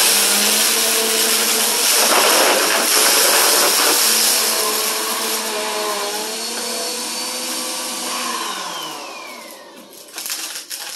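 Upright bagless vacuum cleaner running over carpet. Near the end its motor winds down in a falling whine and the sound fades.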